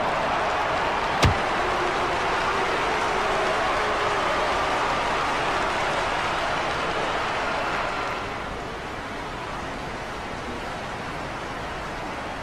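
A steady rushing noise, with one sharp knock about a second in; the noise drops in level about eight seconds in.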